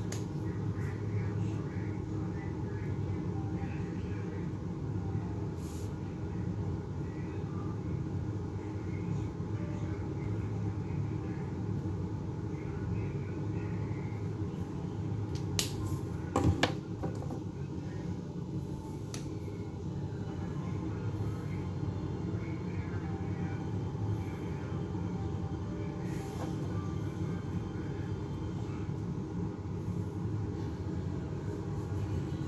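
A steady low hum of room noise, with two sharp plastic clicks about halfway through and a couple of fainter ones, as a dual brush marker's cap is pulled off and pushed back on.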